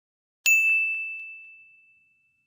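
A single bright bell ding about half a second in, ringing at one clear high pitch and fading away over about a second and a half.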